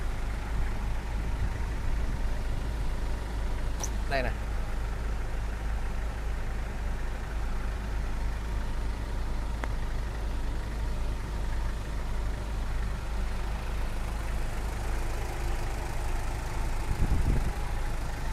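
Vinamotor light truck's Hyundai engine idling steadily, with a low, even rumble heard from inside the cab.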